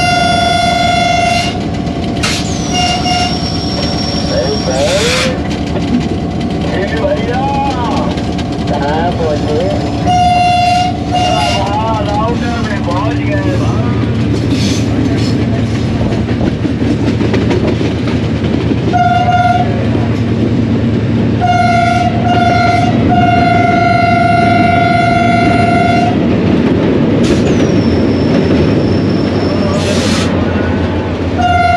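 Diesel locomotive horn sounding a series of single-note blasts, mostly short, with a long blast of about three seconds near the end, over the steady rumble of the moving train. Twice, a high thin whine rises above the running noise.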